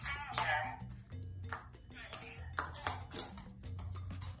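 Recordable talking buttons on a floor board pressed by a dog's paws: a string of sharp clicks, and a short recorded word playing back just after the start. Background music with a low bass line runs underneath.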